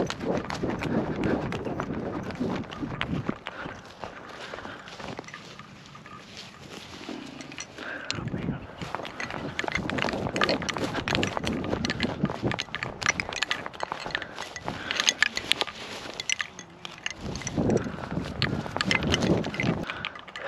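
Footsteps swishing and crunching through short grass as a person walks across a field, with scattered rustling and knocks of handling.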